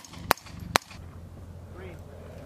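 Rifle shots: three sharp reports in under a second, the last two about half a second apart.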